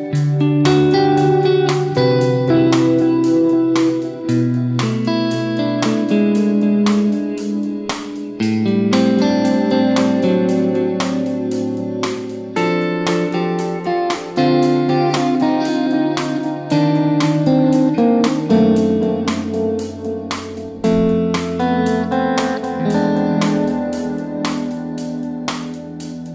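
Electric guitar overdub played over a recorded song, with a steady beat and chords changing every second or two.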